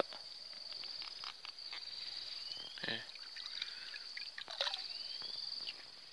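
Steady high insect trill, with small splashes and drips of water as a hand gropes in shallow pond water for a swamp eel.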